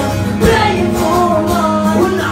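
Live acoustic band performance through the venue's PA: an acoustic guitar is strummed under a man's sung melody.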